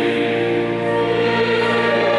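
Mixed choir singing sustained chords in a reverberant church, the harmony shifting about a second in.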